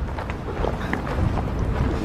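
Wind buffeting an outdoor microphone as a steady low rumble, with a few faint footsteps of a man walking.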